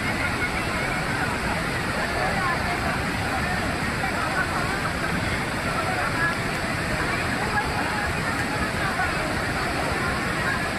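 A torrent of muddy floodwater rushing down a waterfall in a steady, unbroken wash of noise, with faint distant human voices calling over it.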